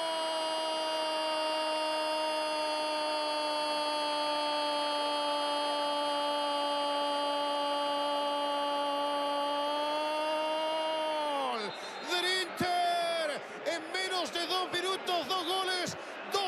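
Football commentator's long drawn-out goal cry, "gooool", one held note sinking slowly in pitch for about eleven and a half seconds and falling away at the end, followed by fast excited commentary.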